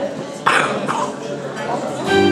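Murmur of voices in a hall, broken by two short, sharp calls, the first loud and sudden about half a second in and a weaker one just under half a second later.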